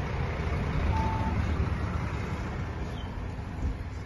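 Outdoor background noise: a steady low rumble with hiss, and one brief beep about a second in.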